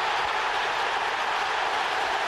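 A steady, even rushing noise with no clear tone or beat.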